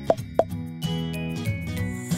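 Cartoon pop sound effects, two quick pops about a third of a second apart in the first half-second, over cheerful children's background music. Then a run of high chime notes steps downward.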